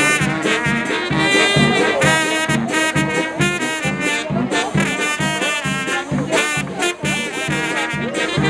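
Brass band music: trumpets and trombones playing a tune over a steady low beat, about two beats a second.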